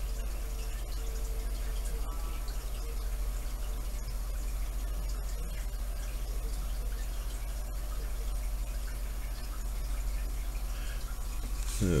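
Steady low background hum, with no distinct sound events.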